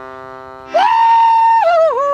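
A small accordion holds a chord; about three-quarters of a second in, the chord stops and a woman's loud yodel takes over on one long high note, then breaks downward in steps near the end.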